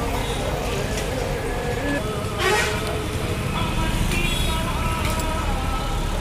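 Busy city street traffic with a steady rumble of engines and a horn toot about two and a half seconds in, with voices and some music mixed in.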